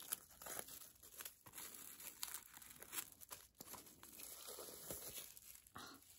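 Plastic shrink wrap on a book crinkling and tearing as it is handled and peeled open: faint, irregular crackles.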